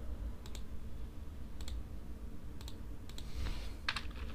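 Computer mouse buttons clicking as menu items are picked: about five single clicks spaced roughly half a second to a second apart, over a low steady hum.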